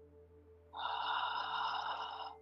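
A person's long, audible breath through the mouth or nose, starting partway in and lasting about a second and a half, taken while holding a standing forward fold. Faint steady background music tones sit under it.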